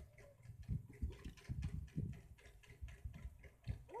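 Small plastic toys clicking and knocking together and against the tabletop as a child's hand moves and picks them up, a string of irregular light clicks, a few every second.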